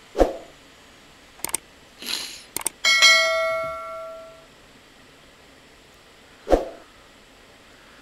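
A subscribe-button sound effect: a couple of clicks and a short swish, then a bell chime about three seconds in that rings and fades over a second and a half. A dull thump comes just after the start and another about six and a half seconds in.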